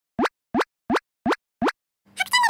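Five quick cartoon 'plop' sound effects, each a short blip sliding upward in pitch, evenly spaced about three a second.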